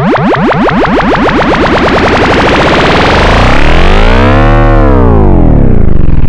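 Loud, heavily distorted electronic music with warped pitch. A dense buzzing tone pulses rapidly and sweeps in pitch, then rises and falls again in the second half.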